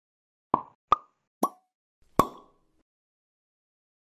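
Intro sound effect of four short, sharp pops, each with a brief ring. They come a little further apart each time, and the last one is slightly longer.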